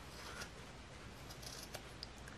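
Scissors snipping through the white fibre strands of a craft gnome's beard, a few faint, crisp snips as the bottom is trimmed off.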